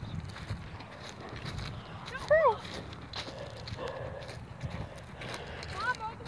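Short high-pitched vocal calls, a loud arching one about two seconds in and a rising one near the end, over a low rumble and scattered taps and knocks.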